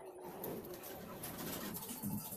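A pigeon cooing, low and soft, over a steady hiss.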